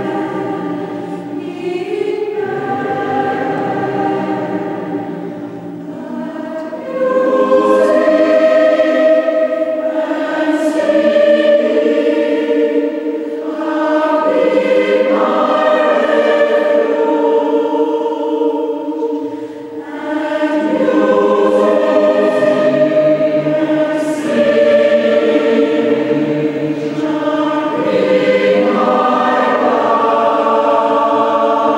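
Mixed choir of women's and men's voices singing sustained chords in a large stone church, in long phrases with short breathing breaks, getting louder about a quarter of the way in.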